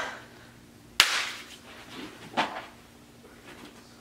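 A single sharp smack about a second in, then a shorter, softer sound a little later, over quiet room tone.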